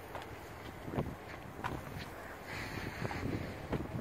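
Wind rumbling on a handheld phone's microphone, with a few light knocks and rubs from the camera being carried and footsteps.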